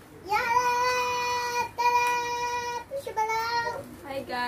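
A child singing long, high held notes: two of about a second each at the same pitch, then a shorter one that rises.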